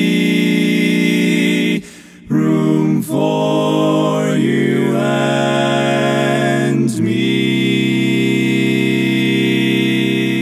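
Barbershop quartet singing a cappella in four-part harmony, holding a long ringing barbershop seventh chord on the word "be", tuned so that no part sounds out of tune. After a brief break just under two seconds in, the voices move through changing notes and settle on another long held chord about seven seconds in.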